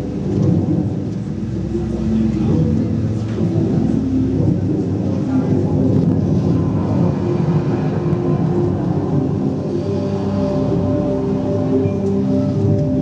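Ambient show soundtrack over loudspeakers: long held drone tones over a deep, continuous rumble.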